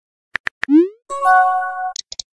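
Chat-app sound effects: three quick taps, a short rising pop, then an electronic chime chord held for almost a second as a message is sent.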